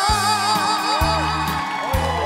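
Live band playing the closing bars of a trot song: a steady bass line with a drum hit about once a second and short melodic fills above it.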